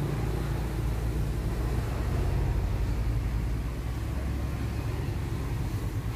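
Toyota Innova's 2.0-litre 1TR-FE four-cylinder petrol engine idling steadily with a low, even rumble.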